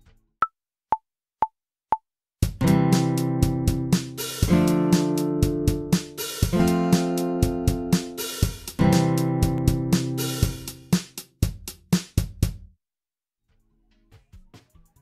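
A four-click metronome count-in, one higher click then three lower, half a second apart, then a BandLab drum machine beat with the sampled acoustic guitar playing four strummed chords of about two seconds each. The chords come from single Smart Keys presses, the notes staggered automatically to imitate a strum. The playing stops a little over a second before the end.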